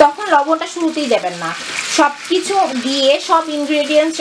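Chunks of green apple sizzling in hot oil in a frying pan, with a person's voice over it.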